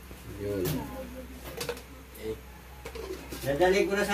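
A bird cooing briefly about half a second in, over a steady low hum. A person's voice starts near the end.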